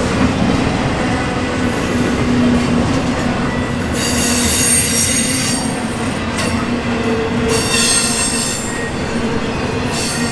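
Double-stack intermodal freight cars rolling past close by, a steady run of steel wheels on rail. A high-pitched wheel squeal rises out of it twice, about four seconds in and again about seven and a half seconds in.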